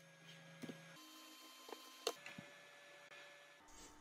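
Near silence: a faint steady electrical hum, with a few soft clicks from keys and mouse at a computer, the clearest about two seconds in.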